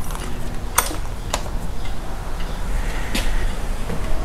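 A few sharp metallic clicks as hand tools, a wrench and a screwdriver, are picked up and handled, over a steady low background hum.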